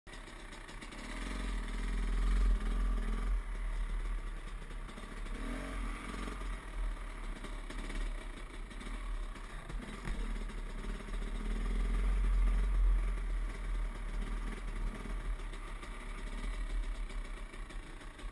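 Dirt bike engine heard from a helmet-mounted camera while riding, the engine note rising and falling with the throttle and loudest twice, with low wind rumble on the microphone. It eases off near the end as the bike slows.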